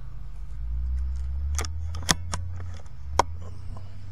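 A few short, sharp metallic clicks from an Evanix Rainstorm SL .22 air rifle being handled and its action worked just after a shot, over a low handling rumble.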